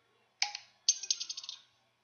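A single sharp click, then a quick run of light, high-pitched ticks lasting under a second.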